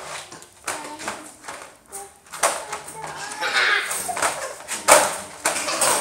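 Tug of war with a puppy through a wire dog crate: irregular knocks and rattles of the crate bars as the toy is pulled back and forth, mixed with the puppy's own noises and faint snatches of a child's voice.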